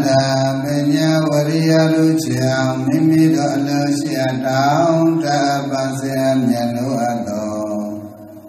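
Buddhist chanting of a Pali verse in long, melodic held notes. It starts abruptly and tapers off near the end.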